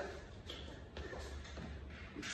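Faint shuffling and soft taps of hands and sneakers on a hardwood floor as a person gets down into a push-up position.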